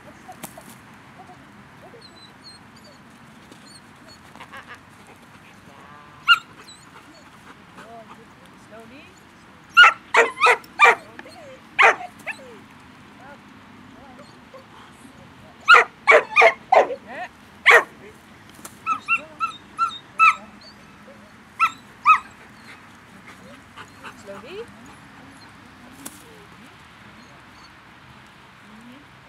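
Rottweiler barking in two quick runs of about six barks each, a few seconds apart, followed by a few lighter barks and yips.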